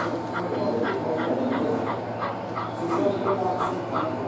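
Model steam locomotive's sound unit chuffing steadily, about four chuffs a second, as the train runs slowly along the layout, over a low steady hum.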